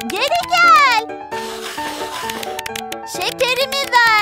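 Light children's cartoon background music with plucked notes, over which a high cartoon-character voice lets out two wordless exclamations that swoop up and then down in pitch, one at the start and one near the end. A stretch of hissing noise fills the middle.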